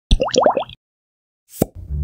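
Cartoon-style logo sound effect: four quick rising pops with a sparkly chime over them, then a pause and one short sharp swish near the end as a low steady hum comes in.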